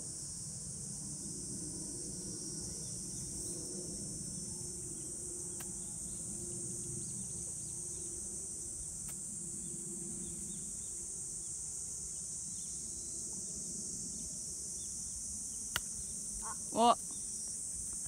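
A steady, high-pitched chorus of summer insects. Near the end comes a single sharp click: an approach wedge striking the golf ball off the fairway grass, followed by a brief exclamation.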